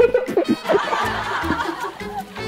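People laughing and snickering in short bursts over background music.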